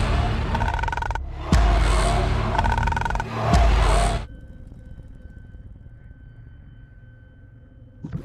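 Horror trailer music and sound design: loud, noisy swells with deep booming hits about one and a half and three and a half seconds in. It cuts off suddenly a little after four seconds, leaving a quiet held drone with a faint high steady tone.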